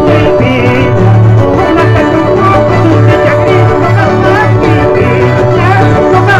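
Andean folk music for the Qorilazo dance played loud and steady: fiddle over plucked and strummed strings, with a repeating low bass note.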